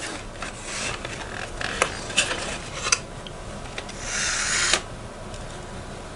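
Hands turning the front wheels and axle of a scale RC rock crawler by hand: rubber tyres rubbing under the fingers and light clicks from the plastic and metal steering and suspension parts, with a longer rasping rub about four seconds in.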